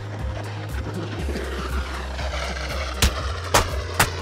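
Background music with a steady bass line, over the scraping hiss of a plastic traffic cone dragged under a slow-moving car. Two sharp knocks about half a second apart near the end.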